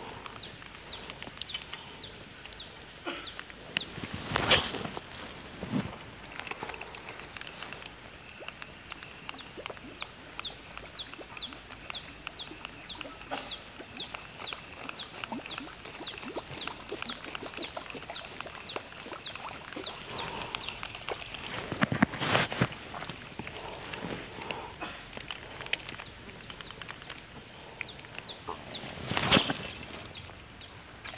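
Creekside ambience: a bird repeating a short, sharply falling call about twice a second over a steady high-pitched whine. Three louder brief noises stand out, about four seconds in, around twenty-two seconds and near the end.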